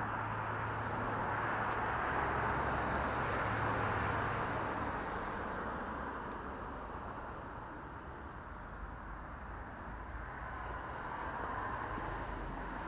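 Nearby road traffic: a steady rush of passing vehicles that swells over the first few seconds, eases off around the middle and builds again near the end, with a low engine hum in the first half.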